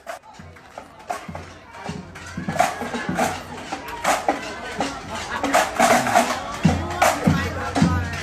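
A marching drum corps playing a rhythm on its drums, the strokes growing louder as the corps comes closer.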